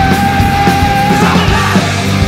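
Hard rock band playing with loud distorted guitars, bass and drums, with a long held high note over the first second or so.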